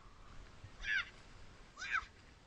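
Two short high-pitched yelps, a second apart, each falling in pitch.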